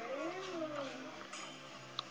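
A drawn-out meow-like call that rises and then falls in pitch, followed by a weaker second one, over faint background music, played through a TV speaker.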